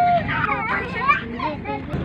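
Several people talking and calling out, over a steady low engine hum.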